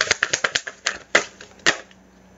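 A deck of oracle cards being shuffled by hand: a rapid run of card snaps that slows to a few separate slaps and stops near the end.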